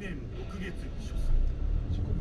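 Low engine and road rumble heard inside a car cabin, growing louder about a second in as the car pulls away, with a voice talking over it.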